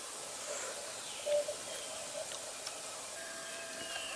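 Woodland ambience: a steady hiss with a few faint, short bird calls, one a little louder about a second in.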